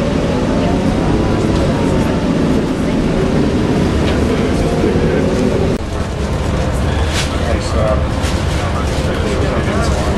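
Shuttle bus engine and drivetrain pulling away and accelerating, heard from inside the passenger cabin as a loud, steady drone with a whine in it. The level drops briefly just before six seconds in, then the drone carries on.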